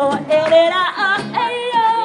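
Woman singing a song in Galician to her own acoustic guitar, holding long notes with vibrato and ornamented turns over strummed chords.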